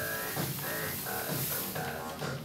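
Electronic music: synthesizer notes repeating in a short riff, about two a second, over a steady bass line.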